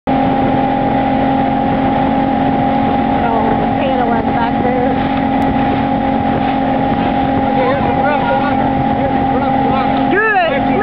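Motorboat engine running at a steady towing speed with a constant hum, over the rush of the wake and wind. Faint voices come in from about three seconds in.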